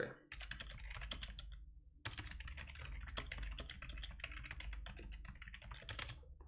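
Typing on a computer keyboard: a quick, dense run of key clicks, broken by a short pause about two seconds in, then continuing until near the end.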